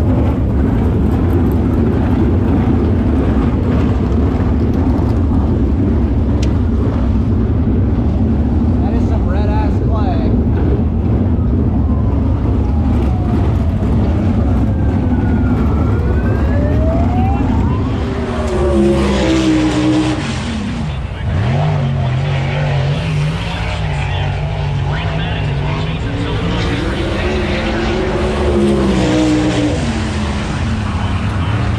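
410 sprint car engines running, a dense steady rumble. From about eighteen seconds in, a closer engine's pitch dips and climbs as it revs.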